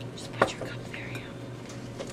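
A pause in a lecture heard through the speaker's microphone: a single short click about half a second in, then a faint breath, over a steady low hum.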